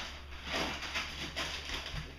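Plastic sheeting liner rustling and crinkling as hands press and tuck it down into a wooden grow-bed box, soft and irregular.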